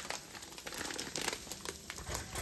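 A paper packet of chili seasoning mix being torn open by hand: a run of quiet, irregular crinkling and ripping crackles.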